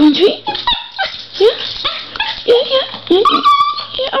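Small Schnorkie (Schnauzer–Yorkie mix) dog whining excitedly in a quick series of short rising whimpers and yips, with one longer held whine near the end.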